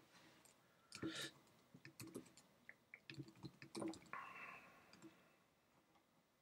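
Faint, scattered clicks of a computer mouse and keyboard, a dozen or so spread irregularly over several seconds.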